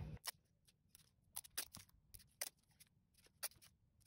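Faint, sparse clicks and crackles of masking tape being torn and laid down on a perspex plate.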